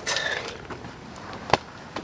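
Low background noise with a single sharp click about one and a half seconds in.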